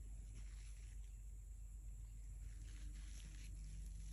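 Quiet room tone with a steady low hum and a few faint, brief scratchy noises.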